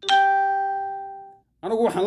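A single chime sounding once: a clear pitched tone that starts sharply and rings out, fading away over about a second and a half.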